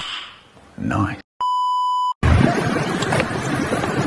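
A short burst of a man's voice, then a steady, high electronic censor-style bleep tone lasting under a second, cut off sharply. After that comes a steady rush of outdoor noise.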